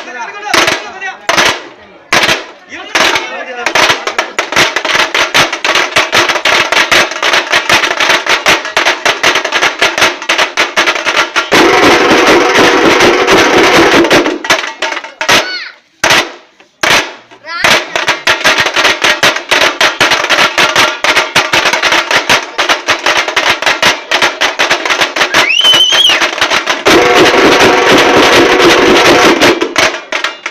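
Loud, fast, continuous drumming with dense rapid strokes, as at a temple festival, joined by a pitched, sustained melody about twelve seconds in and again near the end.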